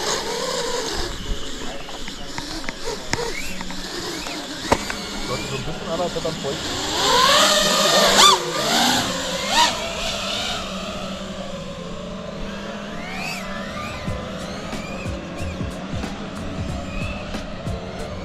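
FPV racing quadcopter's electric motors and propellers whining. The pitch sweeps up and down with the throttle, and the loudest run of sweeps comes about seven to ten seconds in.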